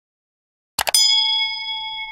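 A quick double mouse-click sound effect, then a bell ding that rings on and fades slowly, as a cursor clicks the notification bell in a subscribe animation.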